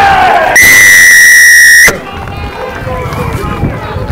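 Referee's whistle: one long, steady blast of just over a second that cuts off sharply, after shouting from players and spectators.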